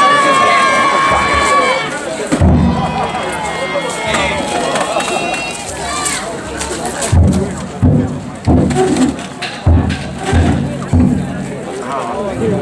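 Voices of danjiri float carriers: a long held high note near the start, then a string of short, loud group shouts in the second half.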